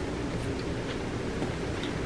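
Steady low hum and hiss of room tone, with a couple of faint ticks and no distinct sound event.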